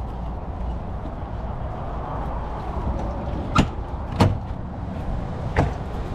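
A travel trailer's entry door being opened, with three sharp knocks or clicks from its latch and frame: the first two come about half a second apart near the middle, and the third about a second and a half later. A steady low rumble runs underneath.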